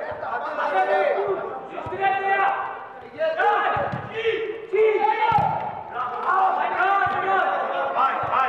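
Players' overlapping shouts and calls during a small-sided football match indoors, with a few dull thumps of the ball being kicked.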